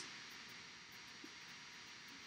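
Near silence: a faint steady hiss of room tone, with faint light scratches of a felt-tip marker writing on paper.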